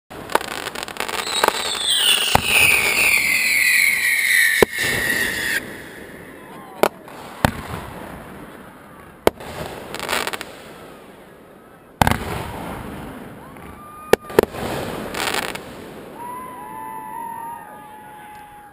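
Aerial fireworks display: a loud falling whistle for the first five seconds or so that stops abruptly, then sharp bangs of shell bursts, some in quick pairs. Near the end, faint distant voices are shouting.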